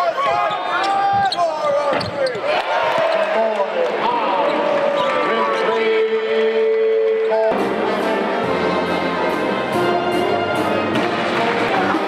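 Basketball being dribbled on a hardwood arena court, with sneaker squeaks and voices of players and crowd. About seven and a half seconds in, loud music with brass starts up suddenly and fills the rest.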